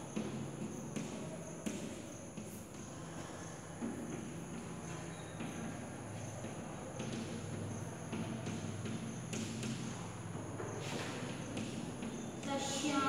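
Chalk writing on a blackboard: scattered sharp taps and scrapes of the chalk against the board, over a steady low hum.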